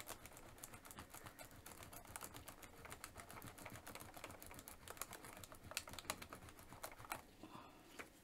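Faint, quick, irregular scratching and clicking of a small tool rubbing a rub-on transfer letter from a plastic sheet down onto a textured painted canvas.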